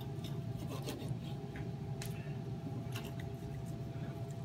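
Chef's knife slicing through cooked chicken breast on a wooden cutting board, a string of irregular soft knocks and scrapes as the blade goes through and meets the board, over a steady low hum.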